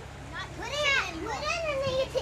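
Young girls' high-pitched voices calling out, unclear words, from about half a second in, over a faint steady low hum.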